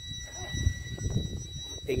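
The van's onboard power unit sounding a steady, high-pitched whine over a low rumble. It is a fault noise that means the unit has to be switched off and restarted later.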